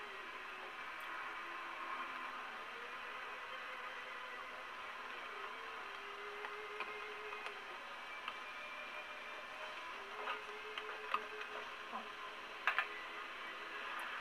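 Steady kitchen background noise with faint indistinct voices, broken in the second half by a few light clicks and two sharp knocks close together near the end.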